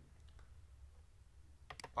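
Computer mouse clicks: a few faint clicks early, then a quick cluster of sharper clicks near the end, over a faint low hum.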